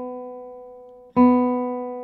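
Open B (second) string of a guitar plucked and left to ring, one note decaying slowly, then plucked again about a second in. The string is a few cents sharp and is being slackened slowly down to pitch while it rings.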